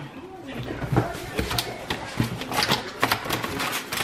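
Irregular clicks and clatter of things handled on a dining table, tableware and food packaging, under faint voices.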